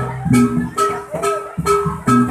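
Javanese jaranan accompaniment music: struck, ringing gong-like and metallophone notes with sharp percussive strikes in a regular repeating pattern over a deep sustained note.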